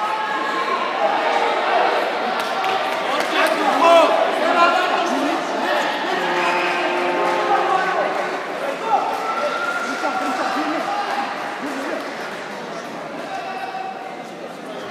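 Several people talking and calling out in a large sports hall, the voices overlapping without a pause.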